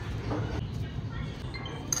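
A few light, high clinks of kitchen utensils over faint background voices and room noise.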